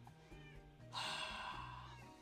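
A house cat meows loudly about a second in, a harsh cry that fades away over most of a second, with quieter background music beneath.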